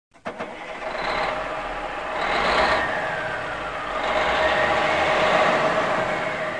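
A truck engine starting about a quarter-second in, then running loud and steady and swelling in loudness twice.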